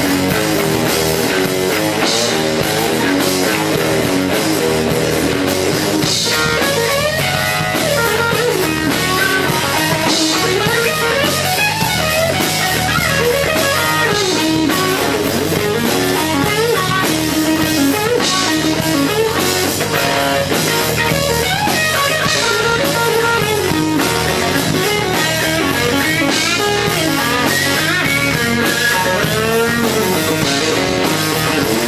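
Gibson Flying V electric guitar playing rock over drums: riffing at first, then from about six seconds in a lead line full of string bends and quick runs, with a cymbal crash every few seconds.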